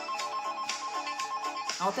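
Telephone ring sound effect in a children's song: a steady, trilling electronic ring that lasts nearly two seconds over a backing track with a beat, then stops as a voice comes in near the end.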